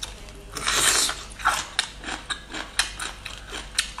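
Crisp crunching and crackling of a bamboo shoot: a loud bite about half a second in, then a run of sharp snaps and clicks as the fibrous shoot is chewed and pulled apart by hand.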